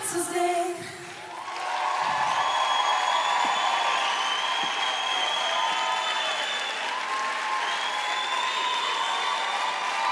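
A sung final note of a pop song ends, then a live studio audience applauds and cheers, with long high-pitched whoops held over the steady clapping.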